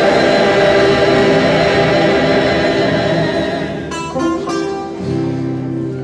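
A mixed choir singing a sustained passage. About four seconds in, the dense choral sound thins and a plucked string instrument enters with a series of separate notes.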